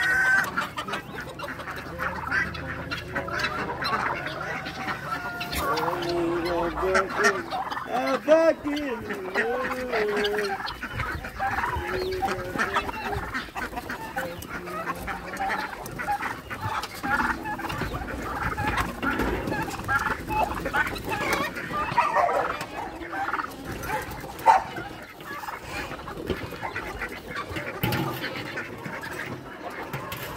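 A large flock of chickens clucking and squawking all at once, crowding in for feed, with roosters crowing now and then among the calls.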